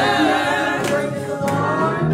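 Gospel choir singing in a church, the voices carrying a sustained melody, with a few sharp percussive hits.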